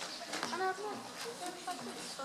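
Faint, indistinct voices talking quietly, with no music playing.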